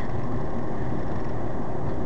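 Steady road and engine noise of a moving car, heard from inside the cabin, low and even with no sudden events.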